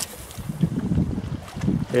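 Wind buffeting the microphone: an uneven low rumble, with a spoken word right at the end.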